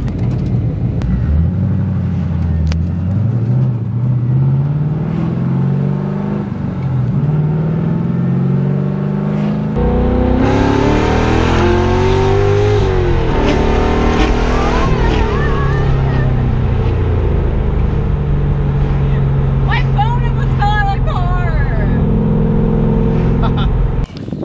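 LS1 V8 in a BMW E36 heard from inside the cabin, accelerating in a few pulls with the engine pitch rising, then settling to a steady cruise about halfway through. Wind noise rises over the engine from about ten seconds in.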